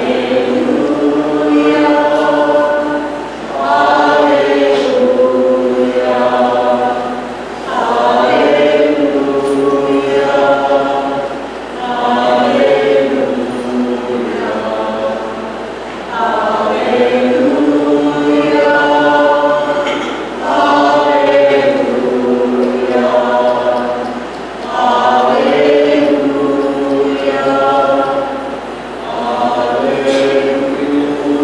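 A church choir singing a slow hymn in long held phrases of about four seconds each, with a short breath between phrases.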